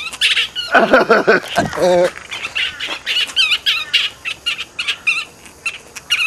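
Rapid, high-pitched squawking and chattering calls of bats during mating, the female resisting the male. A man laughs loudly about a second in.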